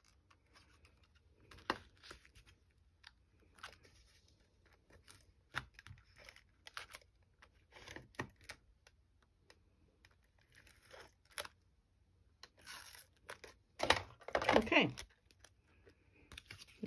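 Faint handling of card stock and ribbon: scattered soft rustles and light taps as a paper card layer is moved and pressed down, with a louder stretch near the end.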